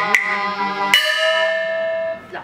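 Cantonese opera band accompaniment: sharp metal percussion strikes that ring like small gongs, over the sustained lines of the melodic instruments. The last strike comes about a second in and is left ringing.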